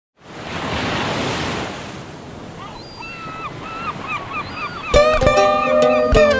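Sea waves wash in and fade, then seagulls call in a string of short cries. About five seconds in, a guitar starts playing the song's intro.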